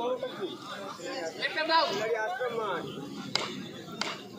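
Indistinct men's voices chattering, with one sharp click a little over three seconds in.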